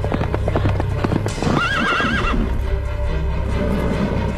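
Horse galloping, hoofbeats drumming fast, then a single whinny with a wavering pitch about a second and a half in.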